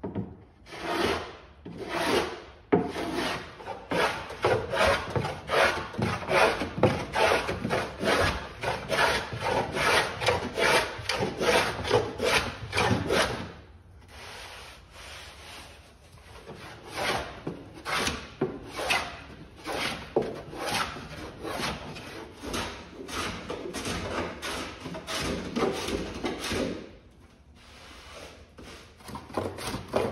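Block plane shaving cedar strip planking in quick back-and-forth diagonal strokes, fairing down the high spots where the planks are not level. The strokes break off for a moment about halfway through and again near the end.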